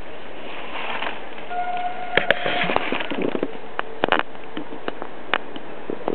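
Irregular sharp clicks and crackles, the loudest about two and four seconds in, over a faint hiss, with a brief steady tone holding for about a second near the middle.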